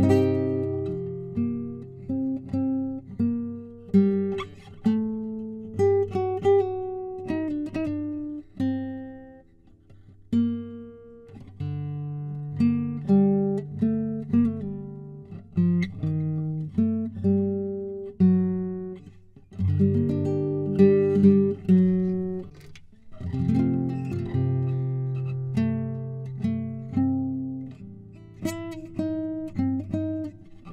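Solo nylon-string classical guitar, fingerpicked: a slow melody with plucked chords over bass notes. The playing thins out briefly about ten seconds in and pauses for a moment near twenty-three seconds.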